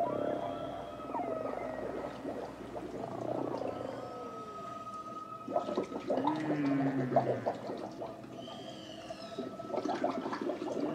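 Whale song: long moaning calls that slide up and down in pitch, with a run of clicks about halfway through and high, arching cries near the end.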